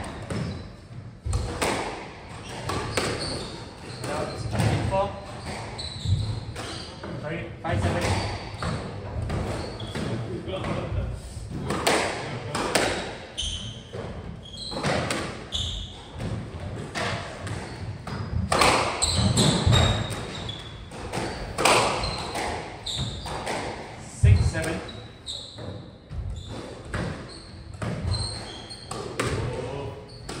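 Squash ball being struck back and forth in a rally: sharp, irregular racket hits and wall impacts, echoing in the walled court.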